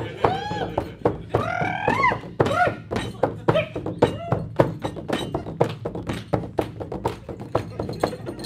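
Large hand-held frame drum with a skin head, struck by hand in a steady rhythm of about three to four beats a second.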